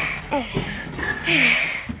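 Child voice actors straining with effort while lifting something: short grunts and hums, then a breathy puff of air about a second and a half in.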